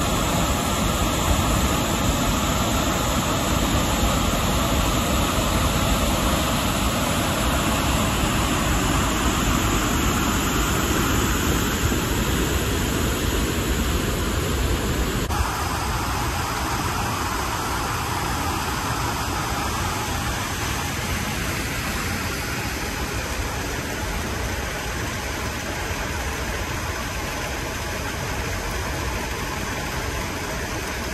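A large waterfall swollen by heavy rain, a steady loud rush of water: the flow has doubled since the rain began. The sound changes slightly about halfway through, where the view changes.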